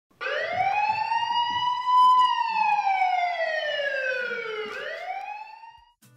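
A siren wailing. Its pitch rises for about two seconds, falls slowly, then starts to rise again near the end as it fades out.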